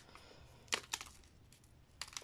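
Faint crackling as hands handle a dry instant-noodle block over its torn foil wrapper, with a few short crackles close together about three-quarters of a second in.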